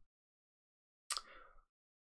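Near silence with the sound dropping out completely, broken once about a second in by a brief, faint noise lasting about half a second.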